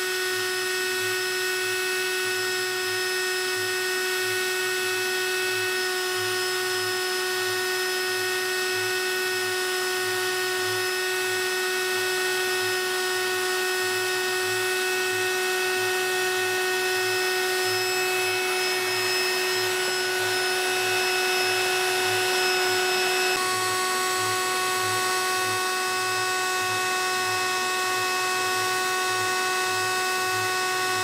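Stepper motors of a CNC flat coil winder whining steadily as it lays extremely fine wire into a spiral coil, with a low regular pulsing underneath. The set of motor tones changes abruptly about two-thirds of the way through.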